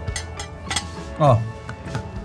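Background music with a steady beat, and a man's falling "Oh" about a second in as he tastes the food.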